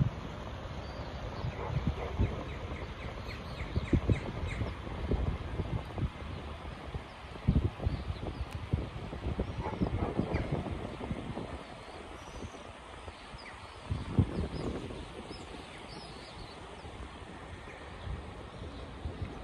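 Open-air ambience with small birds chirping, including a quick run of chirps about two seconds in, over an uneven low rumble that swells in gusts a few times.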